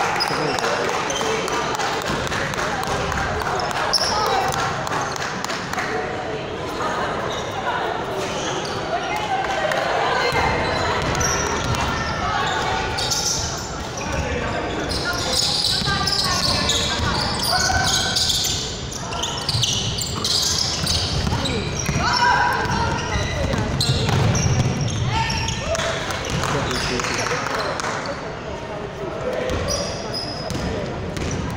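Basketball game sounds in a large sports hall: a basketball bouncing on the wooden court, mixed with players' voices and shouts.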